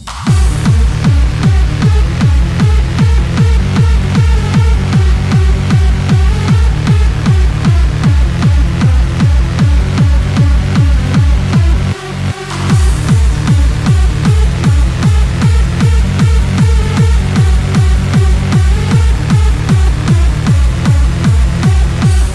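Hard dance music: a heavy kick drum driving a fast, steady four-on-the-floor beat under synth lines. The beat kicks in at the start, drops out for about a second midway under a rising sweep, then comes back in.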